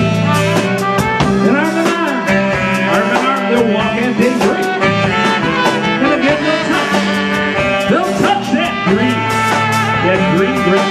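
Live band playing a slow country ballad: a man singing into a microphone over saxophone, electric bass guitar and keyboard, with a steady beat.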